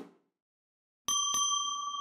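Bell sound effect of a subscribe-button animation: a bell struck twice in quick succession about a second in, then ringing on with a steady high tone that slowly fades. A brief whoosh dies away at the very start.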